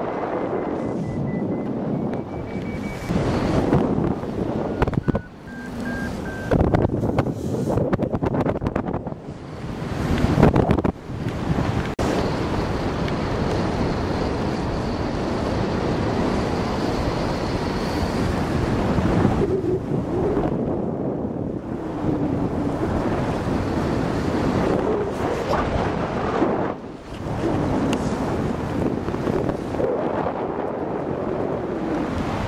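Wind from the airflow of a paraglider in flight buffeting the microphone: a steady rush that swells and dips in gusts. A few faint, steady high tones sound briefly near the start and again around the middle.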